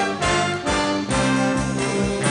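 Brass-led orchestral theme music with trumpets and trombones over a steady beat, playing under the end credits.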